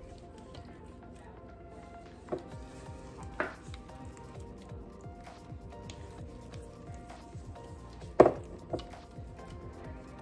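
Quiet background music with soft squishing of gloved hands working sauce over raw pork tenderloins. A few sharp knocks sound, the loudest about eight seconds in.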